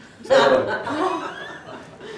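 A man chuckling, starting a moment in and trailing off after about a second and a half.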